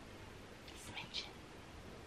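A woman faintly whispering to herself, with a few soft hissing sounds about a second in.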